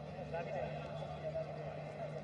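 Faint, distant voices over a steady low hum: the field sound of a football match broadcast.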